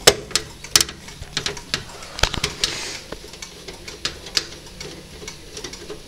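Irregular sharp metallic clicks and taps of a screwdriver and screws against the steel expansion-slot bracket of a PC case, as a graphics card's bracket is being screwed down.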